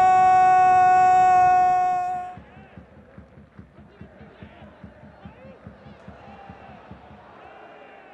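A TV football commentator's drawn-out goal call, "Gol!", held loud on one steady pitch and cut off about two seconds in. Faint stadium crowd noise follows.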